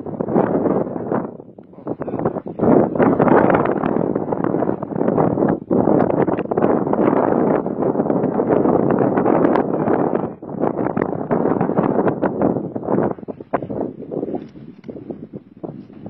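Wind buffeting the microphone, a loud rushing noise that drops out briefly twice and grows weaker near the end.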